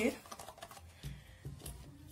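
Light clicks and taps of a thin, cut-open plastic bottle being handled, with a couple of soft low thumps.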